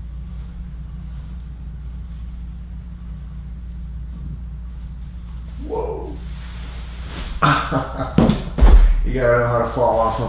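A steady low hum, then a body shifting and rolling back onto a padded floor mat: rustling and knocks, and one heavy low thump a little before the end as the body lands, followed by wordless voice sounds.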